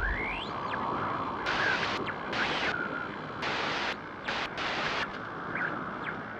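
Sound effect of the GoPro logo intro: a steady rushing noise with bursts of static-like hiss that switch on and off several times, and short rising whistles near the start and near the end.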